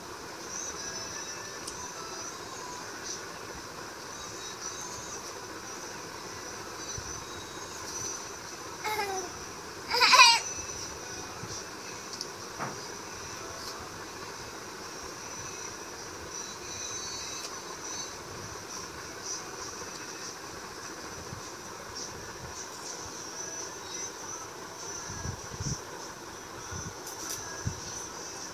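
Steady high-pitched drone of insects, with a toddler's short vocal sounds twice, about nine and ten seconds in, the second louder.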